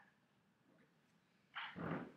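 Quiet room tone, then about one and a half seconds in a short, loud vocal sound from a man, much like a cough or grunt.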